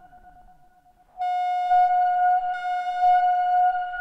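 Behringer Neutron analog synthesizer drone: a fading tone over repeating falling low sweeps. About a second in, a loud, steady, high-pitched tone with overtones cuts in suddenly and holds, its brightness briefly dipping midway.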